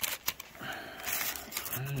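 Paper taco wrapper crinkling as it is pulled open from around a hard-shell taco, with a few sharp crackles near the start and quieter rustling after. A man's voice begins near the end.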